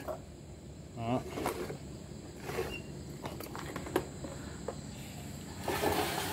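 Quiet room background with a few scattered light clicks and knocks, a brief voice sound about a second in, and a burst of rustling handling noise near the end.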